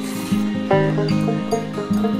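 Background music: a tune of plucked acoustic string notes in a country or bluegrass style, with the notes changing every fraction of a second.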